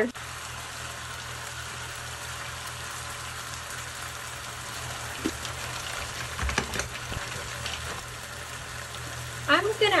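Mussels cooking in a wine-and-water sauce in a pan on a gas burner, with a steady sizzle and a low hum beneath it. From about five seconds in, a wooden spoon stirs them, the shells giving a few short clacks.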